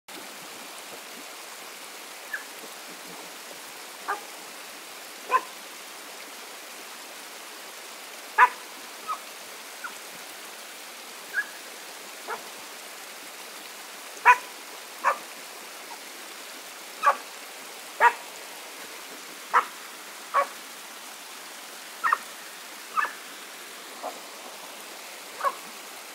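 A dog giving short, high yips, one at a time and irregularly spaced, about twenty in all, over a steady low hiss.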